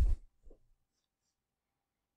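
Near silence, with no room tone, after a spoken word trails off. There is one faint short sound about half a second in.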